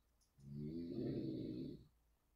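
A man's low, drawn-out hesitation sound, a hummed 'mmm', lasting about a second and a half.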